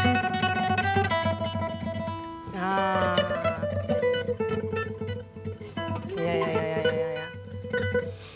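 Classical guitar played with a rapid, continuous tremolo in the style of the Chinese pipa, sustaining a melody. One note slides in pitch about three seconds in, and the tremolo pauses briefly near the end before it resumes.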